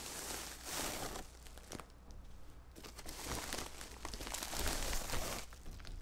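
Tissue paper crinkling and rustling as a wrapped package is pulled open by hand, in irregular handfuls with a brief lull about two seconds in.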